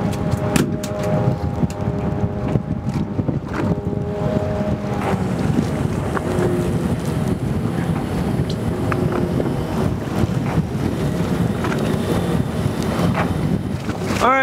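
Strong wind buffeting the microphone over choppy water, with a steady boat-engine drone under it that is clearest in the first five seconds and fainter after.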